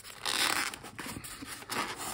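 A plastic-cased modem being pulled out of a tight polystyrene foam packing tray: plastic rubbing and scraping against the foam, loudest in a scrape in the first half second, then small knocks and rustles.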